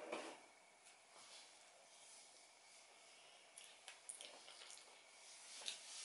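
Near silence with faint chewing of a bite of croissant, and a few soft mouth clicks in the second half.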